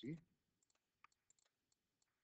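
Faint computer mouse clicks, several in a row spread over about a second, as buttons are clicked on an on-screen calculator.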